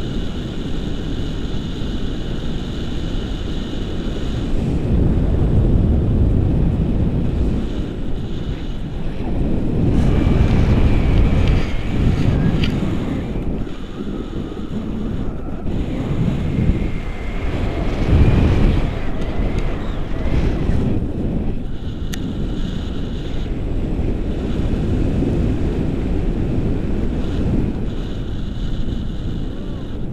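Wind buffeting the microphone of a camera on a tandem paraglider in flight, a loud, rough rumble that swells and eases.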